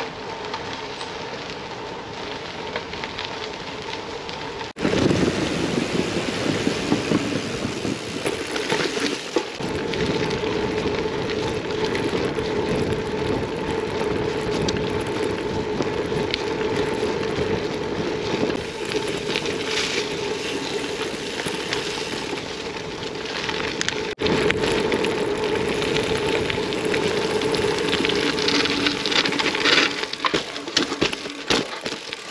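Gravel bike rolling over a rough dirt-and-gravel track: tyre crunch and bike rattle as a steady noise, with a steady hum underneath. The sound is quieter for the first few seconds, then jumps suddenly louder about five seconds in, with another abrupt break near the end.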